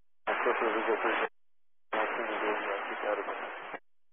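Air traffic control radio: two short, tinny transmissions of a voice whose words are unclear.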